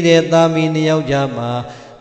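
A Buddhist monk's voice chanting in long, held, melodic notes. The pitch steps down about a second in, and the voice trails off near the end.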